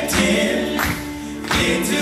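A male vocal group singing in harmony into microphones, with a live band and drum strokes keeping the beat.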